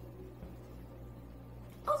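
A pause in speech filled by a steady low hum of room noise, with a boy's voice starting again near the end.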